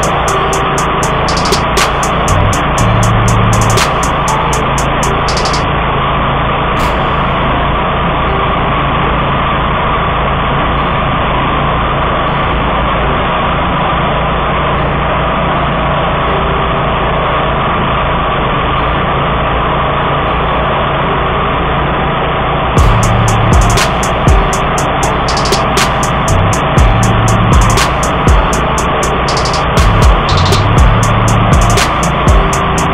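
1999 DR field and brush mower running steadily under load while cutting through tall, overgrown grass. Its engine drone turns rougher, with rapid rattling and uneven low thumps, in the first few seconds and again over the last seven or so.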